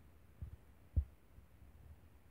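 Two dull low thumps about half a second apart, the second louder, over a faint low rumble.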